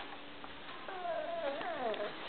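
A child's faint, high-pitched whining vocalisation, starting about a second in and wavering, then sliding down in pitch.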